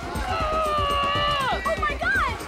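Party music with a steady beat, over which a high voice holds one long note for about a second and a half, its pitch dropping sharply as it ends.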